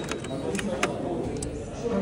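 A few short, sharp clicks and light knocks from objects being handled, spread across two seconds, over a low murmur of background voices.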